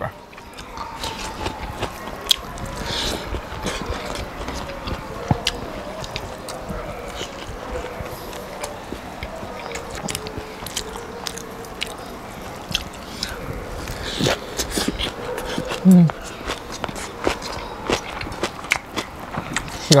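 Close-miked eating by hand: chewing and biting with many small sharp clicks throughout, and a brief low vocal hum about sixteen seconds in.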